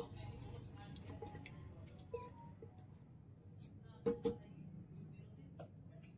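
A spoon stirring thick chickpea curry in a metal pot: faint wet stirring with a few soft taps against the pot over a low steady hum.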